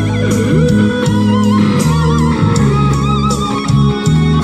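Electric guitar playing a lead melody with wavering held notes over a low bass line.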